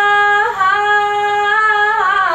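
A young woman singing solo into a handheld microphone, holding one long note, moving briefly to a new pitch about half a second in, then holding a second long note.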